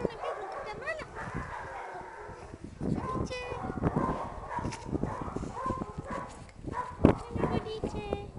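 Small dogs whining and yipping while they are petted and play together, with rustling and handling clicks and a sharp knock about seven seconds in.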